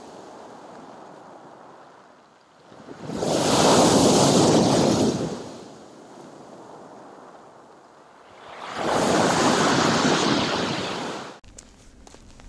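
Sea waves breaking on a pebble shore and against a concrete pier: a steady wash with two loud surges, about three seconds in and again about nine seconds in.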